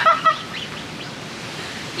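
Even, hissing wind noise on a phone microphone outdoors, after a short vocal sound right at the start.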